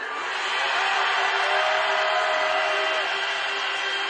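Large crowd shouting and cheering in response, heard as a steady wash of many voices with a few calls held out.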